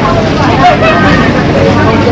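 Loud, steady bustle of a crowded market street, with people's voices talking over a low, dense background noise.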